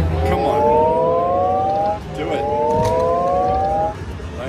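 Buffalo Gold Revolution slot machine's bonus-anticipation sound: a chord of several tones gliding steadily upward, played twice, about two seconds each, while the last reels spin after two gold coin bonus symbols have landed. The second rise cuts off suddenly as the reel stops without a third coin.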